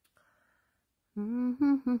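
A woman humming three short closed-mouth notes at a fairly steady pitch, starting about a second in after near silence.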